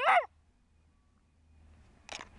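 Hungarian Vizsla puppy giving a brief high-pitched whine that rises and falls twice, cut off about a quarter second in.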